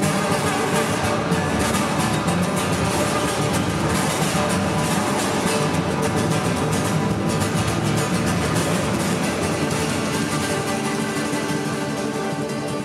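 Acoustic guitar strummed in a fast, steady rhythm as live band music, easing off slightly near the end.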